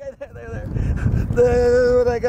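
A kazoo blown in one steady buzzing note, starting about halfway through.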